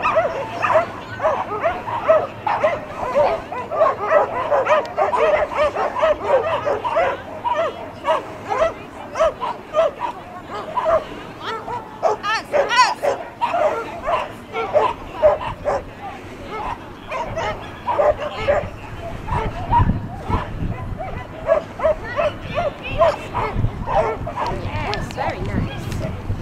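A dog barking again and again in quick runs of short barks, several a second, with people talking in the background.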